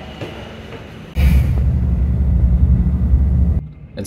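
A loud low rumble starts suddenly about a second in and holds steady until it cuts off shortly before the end.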